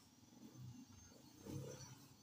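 Near silence, with a few faint low sounds about half a second in and again near the end.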